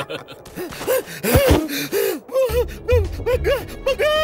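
Cartoon voice acting: a character's wordless, breathless vocalizing, a run of short gasps and groans that rise and fall in pitch. A low steady backing layer comes in about halfway through.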